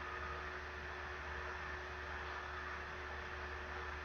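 Steady background hiss with a faint low hum: the recording's noise floor, with no other sound.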